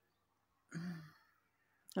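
A woman's short, breathy voice sound, about half a second long, a little under a second in, against near silence.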